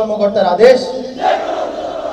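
A military oath in Bengali, recited call-and-response: one man's voice speaks a phrase, and about a second in a large group of recruits repeats it together in a loud, ragged chorus.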